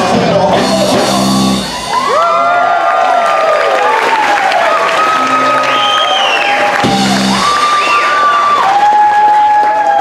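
A live band plays the end of a song with long held notes that slide in pitch, and drum hits about a second in and again around seven seconds. Crowd shouts and whoops sound along with it.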